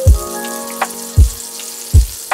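Butter sizzling with a steady hiss as it melts in a hot cast-iron skillet, under background music with a deep drum beat roughly once a second.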